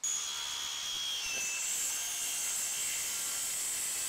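Circular saw cutting through a bamboo lazy Susan board: a steady high whine whose pitch dips slightly about a second in.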